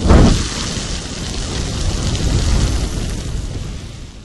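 Sound effect of a frying pan on the hob bursting into flames: a sudden loud boom, then the steady noise of the fire burning, dying away near the end.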